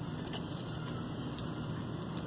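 Steady low background rumble with a faint hum: outdoor ambient noise, with no distinct event.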